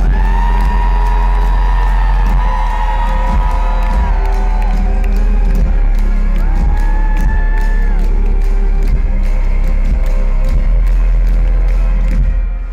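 Live orchestral pop music from strings and brass over a heavy, steady bass, with long held melody notes that shift every few seconds and a steady percussive beat. Crowd whoops and cheers come through.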